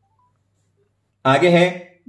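Near silence for just over a second, then a man's voice speaking briefly.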